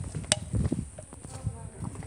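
Irregular soft footsteps while walking, with a sharp click about a quarter second in.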